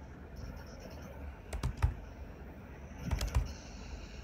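Computer keyboard keys being typed in two short bursts, the first about one and a half seconds in and the second just after three seconds, over a steady low hum.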